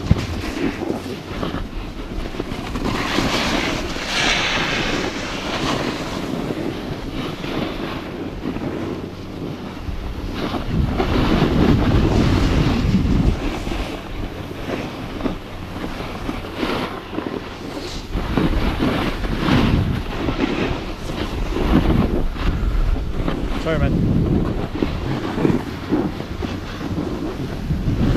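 Wind buffeting the camera's microphone while snowboarding downhill, mixed with the board's edge scraping over snow, swelling louder in several surges through the turns.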